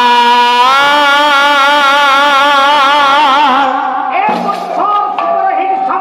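A male pala singer holds one long sung note with a slight vibrato into a microphone. About four seconds in, he drops to lower, shorter sung or declaimed phrases.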